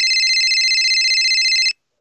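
Phone ringing with an incoming call: a high electronic ringtone with a fast, even flutter, which cuts off suddenly near the end.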